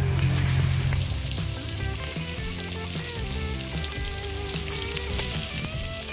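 Freshwater snails frying with red chillies in oil in a metal pot: a steady sizzle throughout, with music underneath.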